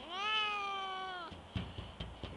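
Domestic cat giving one long meow of just over a second, rising and then slowly falling in pitch. A short low knock follows soon after.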